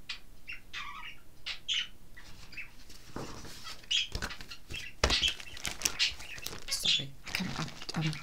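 A softcover pattern book being handled: pages and cover rustling and flapping as it is lowered and put aside, a quick run of short rustles and light knocks that is busiest in the second half.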